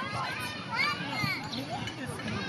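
Children playing: high-pitched voices of several young children calling and chattering over one another, with "let's go" spoken at the start.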